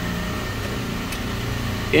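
Steady drone of a refrigeration compressor rack and its machine-room equipment: a constant low electrical hum with a faint, steady high whine.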